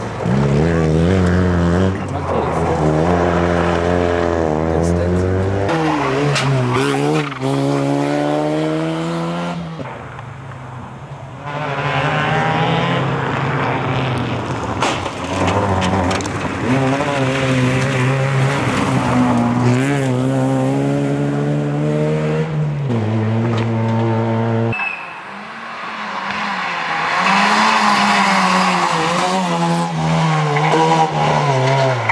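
Opel Astra GSi rally car engine revving hard through the gears, its note repeatedly climbing and dropping back with each shift and lift, briefly falling quieter twice as the car moves off. Tyre noise on the loose surface runs under it.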